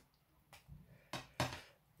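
Kitchen knife cutting through a large crusty sandwich on a plate: a few short scraping sounds, the loudest about a second in.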